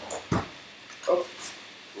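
A single sharp knock of plastic toy pieces being handled, followed about a second later by a brief wordless vocal sound from a person.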